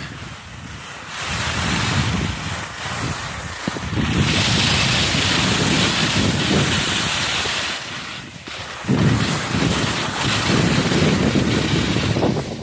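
Wind rushing over the microphone of a skier's camera during a fast descent, with skis hissing and scraping over hard, wind-crusted snow. A stronger, brighter hiss runs from about four to eight seconds in.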